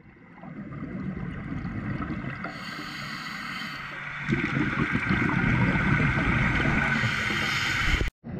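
Scuba breathing heard through an underwater camera housing: a steady regulator hiss, then from about four seconds in a louder low rumble of exhaled bubbles.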